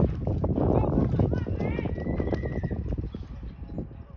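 A horse's hooves pounding the arena dirt as it gallops and turns around a barrel during a barrel-racing run. Short yelling voices sound over the hoofbeats, and the sound fades toward the end.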